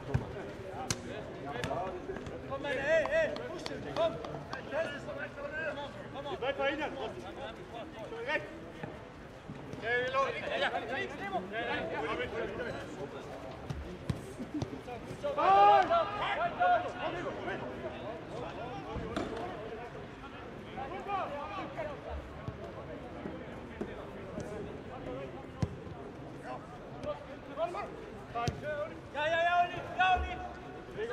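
Footballers calling and shouting to one another on the pitch, loudest about halfway through, with the occasional short thud of the ball being kicked.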